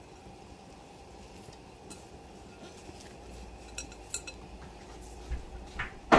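A few faint, scattered clinks of kitchen utensils against cookware, over a low steady hum.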